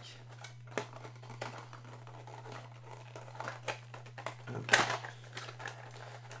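Small white cardboard accessory box being opened by hand: light clicks and rustling of card and packaging, with one louder scrape a little before the end.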